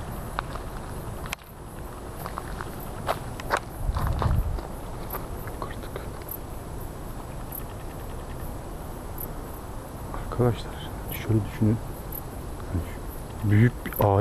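Steady chirring of night insects, with footsteps through grass and undergrowth and a few sharp clicks about three to four seconds in.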